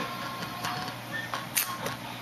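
Low steady hum of running computer hardware, with a few faint short clicks over it.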